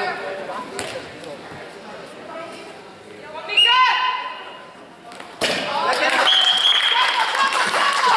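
Voices shouting in a large, echoing sports hall: one loud call about halfway through, then several voices shouting together from about five and a half seconds in.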